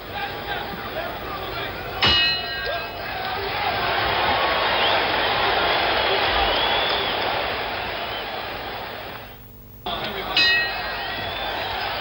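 Boxing ring bell struck once about two seconds in, ringing out to signal the end of the round, followed by crowd noise that swells and then fades. After a short break, a second bell strike rings near the end, signalling the start of the next round.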